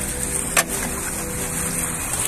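Steady splashing of a small fountain's water jet, with one sharp knock about half a second in.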